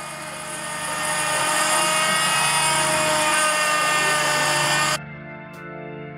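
Trim router running as it cuts a circle into a solid oak butcher's block worktop: a steady whine that grows louder about a second in and cuts off suddenly near the end, leaving quiet background music.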